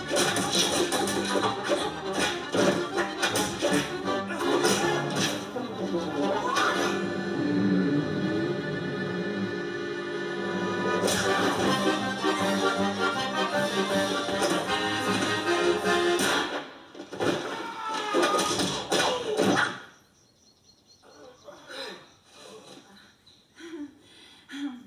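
Film soundtrack heard through a TV speaker: accordion-led music with sharp hits and whooshes of a fight scene, a long held chord in the middle. The music stops about 20 s in, leaving quieter sound with a few brief voices near the end.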